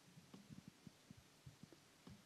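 Near silence: faint room tone of a large hall, with a scattering of very faint, short low thumps.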